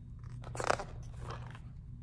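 Paper page of a large picture book being turned by hand: a short crisp rustle about half a second in, then a fainter one.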